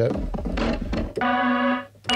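Sampled loops played from a Kontakt software instrument: about a second of gritty, noisy loop with low rumble, then a held, organ-like orchestral tape loop tone that cuts off abruptly just before the end.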